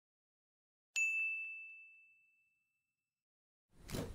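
A single bright chime or ding about a second in, one high ringing tone that fades out over about a second and a half, then a short rushing burst of noise near the end: sound effects on an animated channel end screen.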